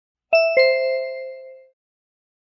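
Two-note descending chime, ding-dong: a higher tone struck, then a lower one about a quarter second later, both ringing out and fading over about a second. It marks the end of a recorded listening-test item.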